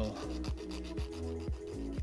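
Hand file rasping back and forth over the free edge of an acrylic nail overlay in repeated short strokes, shaping the edge.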